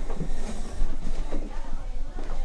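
Office chairs being pushed back and people standing up and walking off, an irregular shuffling with a few light knocks.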